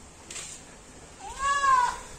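A single short, high animal call, rising and then gently falling in pitch, with a cat-like meowing sound, lasting under a second, near the end.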